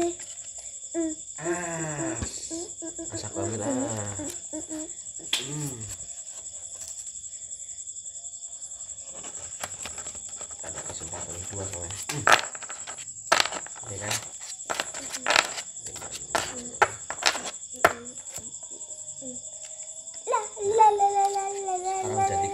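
Playing cards slapped down one after another, a string of sharp clacks over about six seconds, against a steady high chirring of crickets. Voices murmur in the first few seconds.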